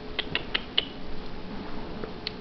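A quick run of four light clicks within the first second, over a faint steady hum.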